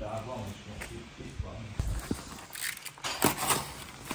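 Faint voices in the background, then a few short rustling, scraping sounds near the end.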